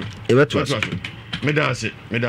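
Speech in a local language that the recogniser did not write down, with light clicking mixed in behind it.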